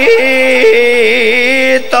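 A man's voice chanting a Punjabi majlis lament in a sung, melismatic style, holding one long wavering note that breaks off shortly before the end.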